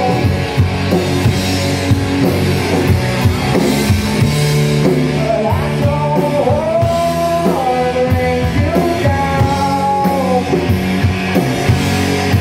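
Live rock band playing: distorted electric guitars, bass and a drum kit with a singer, steady and loud throughout. Through the middle a line of long, held notes bends up and down over the band.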